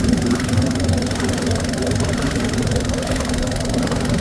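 Boat engine running steadily: a low, rough knocking hum with one constant tone, no change in speed.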